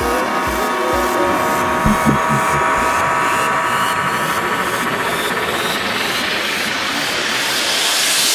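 Electronic dance music in a DJ set. The kick drum drops out about two and a half seconds in, leaving sustained synth tones under a hissing noise sweep that rises steadily in pitch and loudness: a build-up towards a drop.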